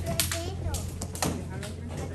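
Indistinct murmured voices with a few scattered sharp taps, over a steady low hum.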